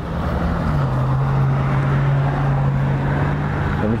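Harley-Davidson Street Glide's V-twin idling steadily through Cobra aftermarket exhaust, the idle dropping slightly in pitch about a second in.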